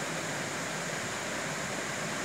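Steady, even hiss of room noise with no distinct sounds in it.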